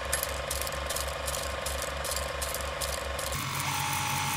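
Old film projector running, a steady mechanical clatter of rapid clicks with a regular pulsing beneath. A steady tone sits under the clatter and steps up in pitch about three and a half seconds in.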